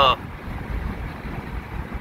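Steady low rumble of a vehicle driving along a road, heard from inside the cabin: engine, tyre and wind noise with no sudden events, after one short spoken word at the start.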